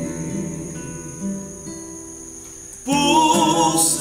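Acoustic guitar playing alone for about three seconds, quieter than the song around it. Then a man's singing voice comes back in over the guitar near the end.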